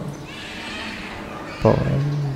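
A monk's voice preaching a sermon: a short pause with faint background hiss and a low steady hum, then his voice starts again suddenly near the end.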